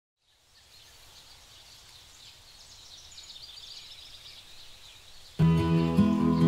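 Faint outdoor ambience with birds chirping fades in from silence. About five seconds in, soft acoustic-guitar music starts suddenly and much louder.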